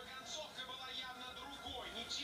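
Background television sound: a voice talking over music.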